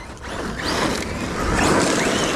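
Electric radio-controlled off-road car running across loose gravel, its tyres crunching and throwing stones, the noise building over the first second and loudest in the second half.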